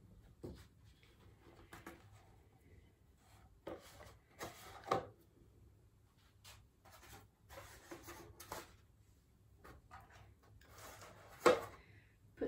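Handling sounds of compostable food trays being picked up and set down on a table: scattered light taps and rubs, the loudest a sharp knock near the end.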